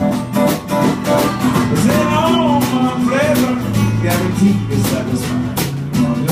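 Live blues band playing an instrumental passage: strummed acoustic guitar and electric guitar over a drum kit keeping a steady beat.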